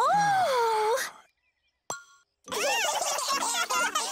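A cartoon character's long, falling wordless vocal sound, then a short ding and a busy cluster of warbling cartoon voices and sound effects.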